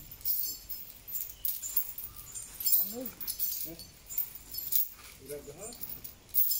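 Metal chains on an Asian elephant clinking and jingling with many short, sharp ticks, with a few brief voice calls from a man.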